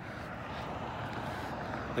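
Steady outdoor background noise: an even rumble and hiss with no distinct events, like the noise of vehicles around a truck lot.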